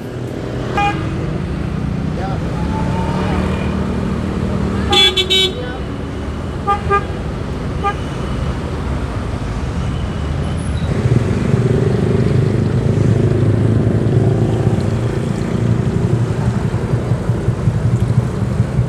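Busy road traffic: the steady engine rumble of cars and motorbikes, with a short loud horn toot about five seconds in and a few brief beeps around seven to eight seconds. The engine noise grows louder from about eleven seconds, as of a vehicle passing close.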